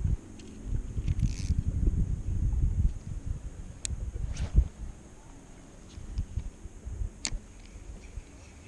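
Dull knocks and low rumbling from gear being handled in a kayak, busiest in the first few seconds, with a few sharp clicks, one about four seconds in and one about seven seconds in.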